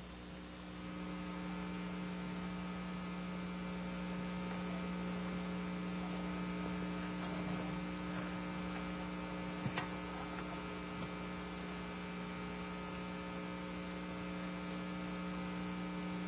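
Steady electrical mains hum with a buzz of overtones, stepping up slightly in level about a second in; one faint click near the middle.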